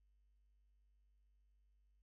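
Near silence: only a faint, steady low hum with no other sound.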